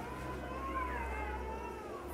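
A small child's high, wavering cry lasting almost two seconds, rising and then falling in pitch, over a low steady hum.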